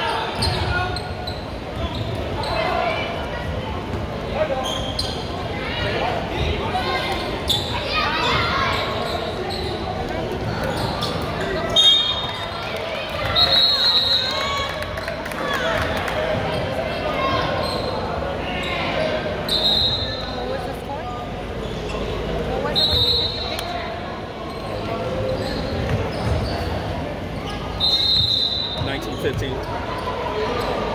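Indoor basketball game: a basketball bouncing on the hardwood court and sneakers squeaking sharply several times, over indistinct voices of players and spectators echoing in a large gym.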